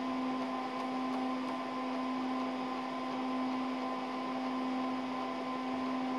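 DEC PDP-8/e minicomputer running, its cooling fans giving a steady hum of several fixed tones over an even hiss.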